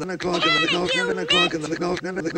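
A man's spoken phrase chopped into a rapid stutter loop ('the clock and the clock…'), repeating about four times a second. Two short, high, squeaky cries that rise and fall in pitch cut over it, about half a second in and again just after the middle.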